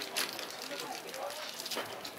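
Two short sharp clicks of golf clubs striking balls, a louder one just after the start and a fainter one near the end, over low murmuring voices.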